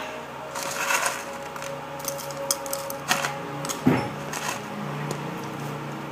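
Light, scattered clicks and rustles of food being mixed by hand in a bowl, with one louder knock about four seconds in, over a faint steady low hum.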